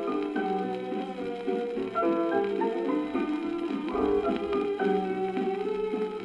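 1942 78 rpm recording of a swing fox-trot song with dance-orchestra accompaniment, playing with a steady beat. It has the thin, narrow sound of an old shellac disc transfer, with little high end.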